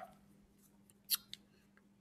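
Two short, sharp clicks about a quarter second apart, a little over a second in, against a quiet room.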